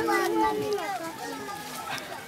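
Background voices of several adults and children talking over one another, quieter than close speech and fading toward the end.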